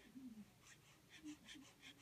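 Faint, quick scratching of a snap-off utility knife blade sawing into a foam Nerf dart body, about four to five short strokes a second starting about half a second in.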